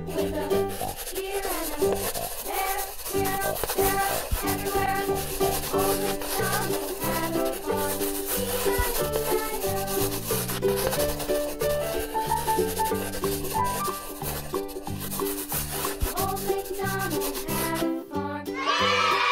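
Background music with steady melodic notes, over the rubbing of a black permanent marker's felt tip drawn across paper as it traces thick lines.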